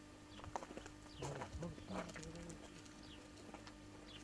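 Faint outdoor ambience: birds chirping now and then over a low steady hum.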